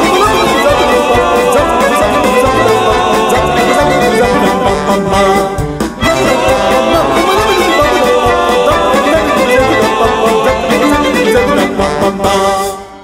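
Live band playing an up-tempo instrumental passage of a classical-jazz fusion piece, led by violins with brass and a steady drum beat. The music drops out briefly about halfway through, then resumes.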